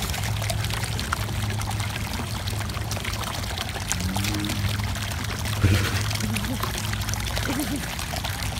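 Water running steadily, like water pouring into a pool, over a low steady hum, with a few short pitched glides around the middle and near the end.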